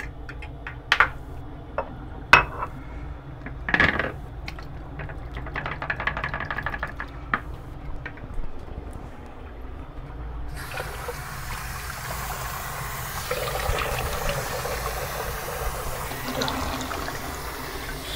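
Water running from a bathroom sink tap into the basin, turned on about ten seconds in, with splashing over it as the face is rinsed after a shave. Before that, three sharp knocks and some light splashing at the sink.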